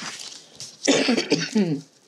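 A woman coughing about a second in, a harsh burst trailing off in her voice.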